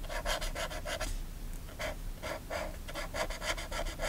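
Felt brush-tip marker rubbed across a grid-paper journal page in quick short strokes, about six a second, colouring in small squares. The strokes pause briefly about a second in, then start again.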